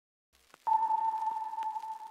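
A single clear sustained tone sounds suddenly about two-thirds of a second in and slowly fades, over faint hiss and scattered soft clicks.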